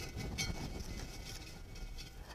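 Quiet, steady low room hum with faint handling noise as bark-covered wire is wrapped against a terracotta pot, with one light tick about half a second in.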